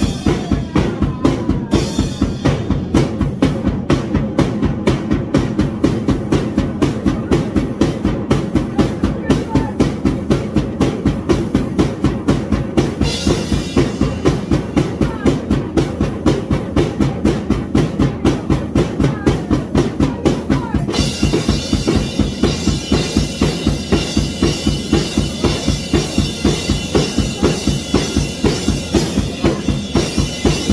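Acoustic drum kit played in a steady, driving beat of bass drum and snare strikes. Cymbals come in about halfway through and ring continuously over the beat toward the end.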